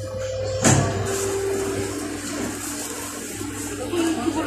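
Electric train's traction motors whining as it brakes into a station, the tone stepping down in pitch twice over a low running rumble, with a knock about a second in.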